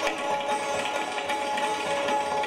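Sitars and tabla playing Hindustani classical music together, the sitars holding steady notes over quick plucked strokes.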